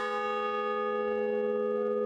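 Large bronze bell struck once at the start, then ringing on steadily with several tones sounding together, barely dying away.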